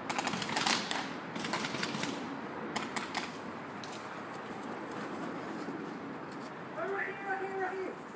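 Paintball markers firing in quick rapid bursts of sharp cracks, the loudest in the first second and another burst around three seconds in. A brief voice calls out near the end.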